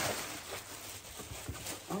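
Plastic air-cushion packing wrap crinkling and rustling as it is handled and pulled out of a cardboard box.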